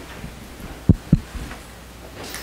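Two dull thumps about a quarter-second apart, handling noise from a handheld microphone being moved, over a low steady hum from the sound system.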